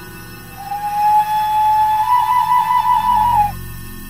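A recorder plays one long held note that edges slightly higher in pitch partway through, then stops sharply about three and a half seconds in.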